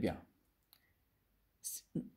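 A man's voice finishing a word, then a quiet pause. Near the end comes a short, sharp click with a hiss, just before he speaks again.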